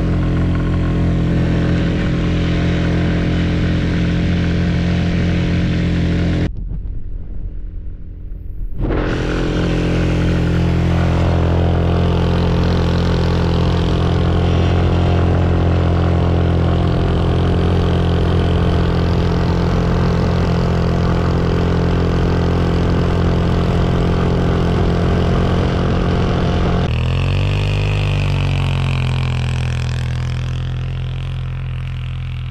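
Polaris Hammerhead GTS 150 go-kart's 150cc single-cylinder four-stroke engine running at a steady speed under load, towing a rider through snow. The sound goes muffled for about two seconds a third of the way in, and near the end the engine note falls in pitch.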